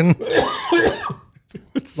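A man coughing as he laughs, in a rough burst about a second long, followed by a short pause.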